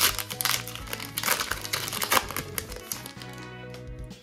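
Foil booster-pack wrapper crinkling as the pack is torn open and the cards are pulled out, with sharp crackles loudest at the start and about two seconds in, over steady background music.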